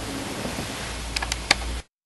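Steady background hiss with a low hum, broken by a few faint clicks about a second and a half in. The sound then cuts off abruptly to dead silence just before the end, at an edit.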